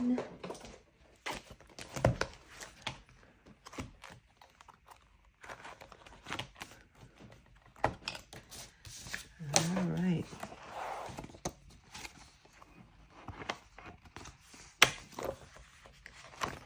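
Paper planner pages rustling and tapping as they are fitted back onto the metal rings of a ring-bound planner, with scattered clicks and one sharp click near the end.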